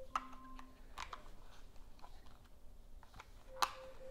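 Small plastic clicks and ticks from handling a battery box of an LED light kit as the batteries are seated and the box is closed, with one sharper click shortly before the end.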